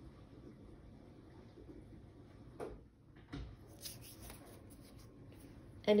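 Quiet room tone with a few faint, brief taps and rustles about halfway through, as a small red trapezoid block is handled and set down on a wooden table.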